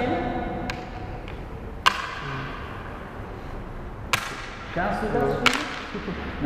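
Backgammon checkers being moved and set down on a wooden board: four sharp clacks spread across a few seconds, the loudest about two seconds in.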